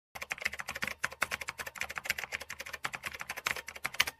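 Computer keyboard typing sound effect: a fast, unbroken run of key clicks, many keystrokes a second.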